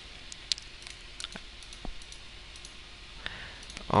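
A few sparse, sharp clicks from a computer keyboard and mouse, one at a time, over a faint steady hiss.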